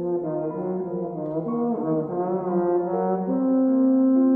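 Bass trombone playing a moving melodic phrase, with a wavering note about halfway through, then settling into a long held note from about three seconds in, the loudest part.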